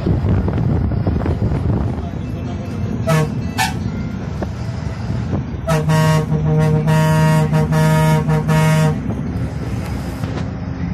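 Steady diesel engine and road rumble heard from inside an Ashok Leyland Viking bus under way. A horn gives two short toots about three seconds in, then a longer run of honking, several loud blasts in quick succession, from about six to nine seconds.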